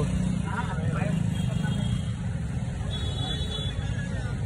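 Mahindra Thar SUV's engine running steadily while it sits stuck in a roadside drain and the driver tries to back it out, with people talking faintly in the background.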